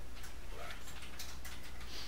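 A few faint, scattered clicks from a computer mouse being handled, over a steady low electrical hum.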